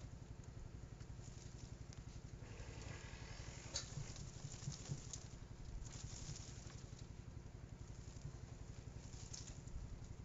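Faint handling of potted peanut plants: potting soil crumbling and pattering onto a wire mesh screen, and the plants' foliage rustling, with a few light clicks about four seconds in and again near the end.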